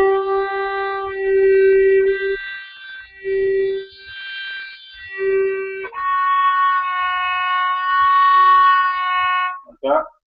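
Violin played with slow, long bow strokes on sustained notes with a slow vibrato: a practice exercise for learning vibrato. The pitch changes a few times, with short breaks between notes around three to six seconds in.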